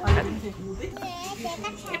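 A young child and an adult talking, the words unclear, with a loud low thump right at the start.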